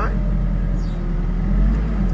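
Diesel engine of a JCB TM telescopic loader running steadily, heard from inside the cab, while the raised bucket tips feed.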